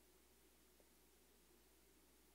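Near silence: faint steady room tone and hiss.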